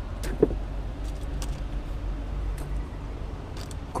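Steady low rumble of a boat's engine, with scattered light clicks and rustles as wet fish are handled in a plastic-lined cooler box.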